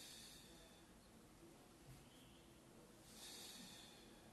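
Faint breathing of a person exercising: a few soft, hissy breaths over near silence, the longest one near the end.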